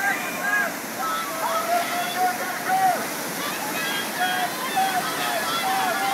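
Whitewater rushing and churning through a concrete artificial slalom canoe course, a loud steady rush. Indistinct raised human voices carry over the water.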